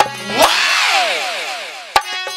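Barrel-drum (dholak) rhythm breaks off, and a single pitched sound rises briefly and then glides steadily down over about a second and a half with a hiss over it. A sharp hit near the end brings the drumming back in.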